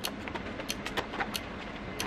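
A few small clicks and taps of a toiletry bag and makeup items being handled, over a low steady room hum.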